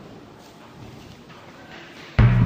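Faint room noise with a few soft knocks.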